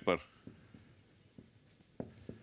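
Marker pen writing on a whiteboard: a few faint short strokes and ticks as a word is written.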